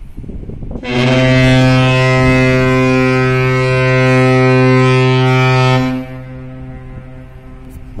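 Container ship's horn sounding one long, steady, deep blast of about five seconds, starting about a second in and cutting off sharply, with a fainter lingering tail after it. In fog, this single prolonged blast is the signal of a power-driven ship under way.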